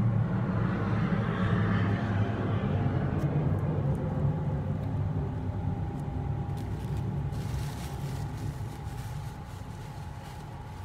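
Low rumble of a distant engine, loudest in the first few seconds and slowly fading, as of something passing by.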